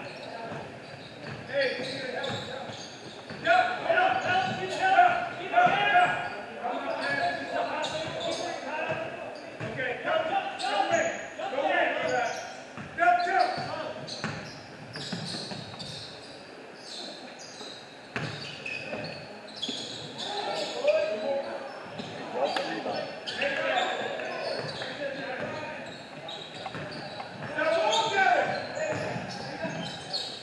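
Basketball bouncing on a gym floor as it is dribbled, with shouting voices from players and the bench in between, echoing in a large hall.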